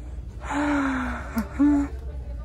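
A woman's wordless breathy vocal exclamation, drawn out and falling slightly in pitch, then a short catch and a second brief exclamation.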